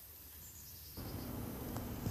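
Faint outdoor ambience: almost silent for about the first second, then soft, steady background noise with a high hiss of insects.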